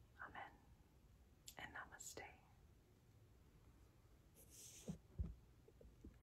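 Near silence in a small room, with a few faint, short whisper-like sounds. Just after five seconds in comes a brief low bump: the recording device being handled.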